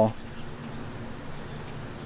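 A cricket chirping: short, faint, high-pitched chirps repeating several times a second over a low background hiss.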